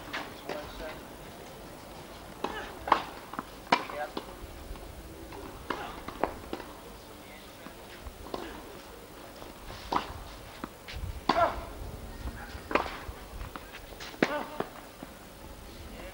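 Tennis balls struck by rackets and bouncing on an outdoor court during a rally, a sharp knock every second or two, with people's voices in the background.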